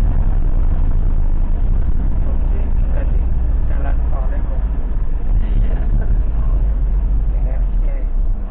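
Steady low rumble of a moving ambulance, engine and road noise, heard from inside the cab, with faint muffled voices in the middle.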